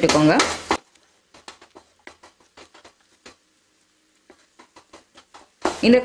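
A spatula scraping and tapping in a frying pan as eggs are scrambled: faint, irregular strokes. A voice is heard for the first second and again just before the end.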